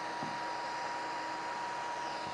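Small cooling fan on the transistor heatsink of a plasma-generator kit running with a steady hiss, under a thin steady high whine.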